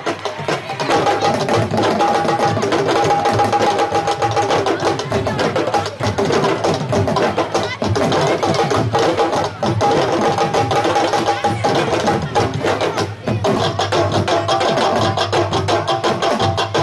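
A large sabar drum ensemble playing a fast, dense rhythm, drumheads struck with sticks and bare hands, with a short drop in the playing about three seconds before the end.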